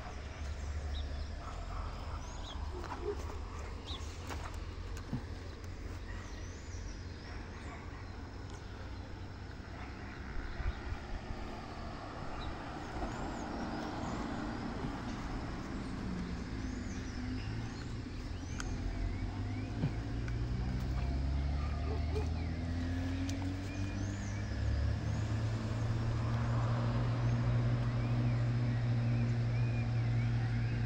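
Outdoor ambience with small birds chirping and a motor vehicle's engine running. The engine grows louder in the second half, its pitch rising around the middle and then holding steady.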